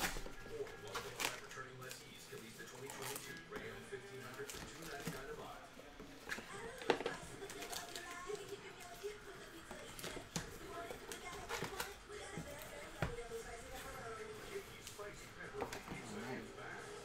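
Handling of a cardboard trading-card box and its paper-wrapped packs: scattered taps, clicks and rustles as packs are lifted out and stacked, under faint background music and voices.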